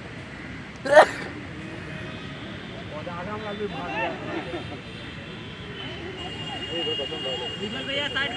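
Players' voices calling across an outdoor football pitch, with a short, loud burst about a second in, and more calls near the middle and at the end.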